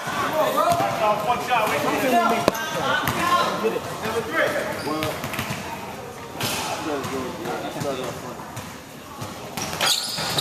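Indistinct chatter of several voices in a gymnasium, with a basketball bouncing on the hardwood floor at the free-throw line.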